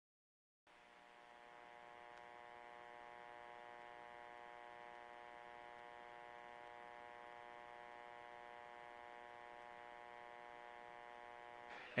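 Near silence, then a faint steady hum of several held tones that starts about a second in.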